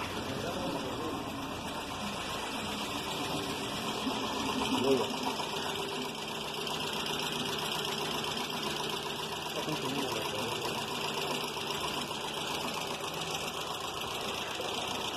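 A freshly rebuilt Volkswagen Jetta A4 2.0 four-cylinder engine idling steadily, with a rapid light ticking from the valvetrain: the hydraulic lifters are still filling with oil after the rebuild.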